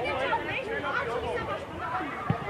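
Several children's voices shouting and calling out at once, overlapping, during a youth football game.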